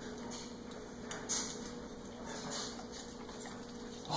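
A dog licking and mouthing a lemon: faint, scattered wet clicks and smacks, with a slightly louder one about a second in.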